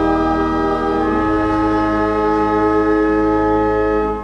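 The final long chord of a sung threefold Amen, held steady by church organ and choir over deep bass notes. It is released right at the end.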